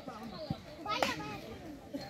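Spectators' voices along the touchline, many people calling out and talking over each other, with a brief sharp knock about halfway through.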